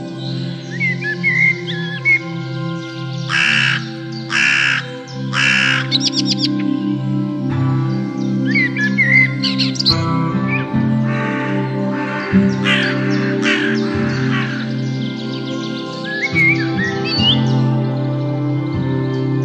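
A crow cawing: three harsh caws about a second apart, then more in the middle. Short songbird chirps come in between, all over soft ambient music with a steady drone.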